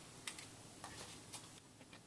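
About half a dozen faint, irregular clicks and taps from handling a plastic external hard drive enclosure and its cable plugs while it is being connected and powered up.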